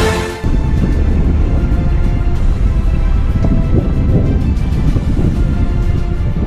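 Music cuts off about half a second in, giving way to a loud, steady rumble of wind buffeting a camera mounted on the outside of a moving car, mixed with road noise from a dirt road.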